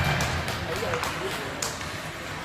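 Ice hockey rink sound: indistinct spectators' voices over the rink's din, with sharp clacks of sticks and puck on the ice, the loudest about three-quarters of the way through.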